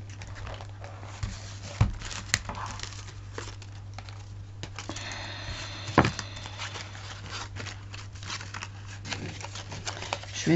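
Paper and card rustling and crinkling as hands rummage across a craft table, with a few light knocks, the sharpest about six seconds in. A steady low hum runs underneath.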